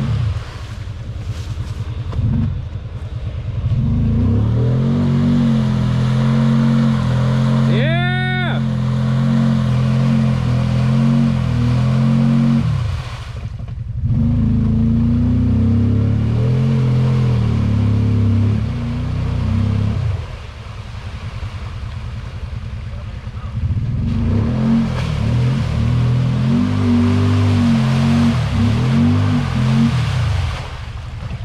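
Kawasaki Teryx side-by-side's V-twin engine revving and easing off repeatedly as it works through a muddy creek, with two lulls in throttle partway through. A brief high swooping tone sounds about eight seconds in.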